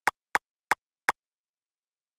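Four short, sharp clicks in quick succession in the first second, then silence: clicks as items are selected while the Quill VR interface is operated.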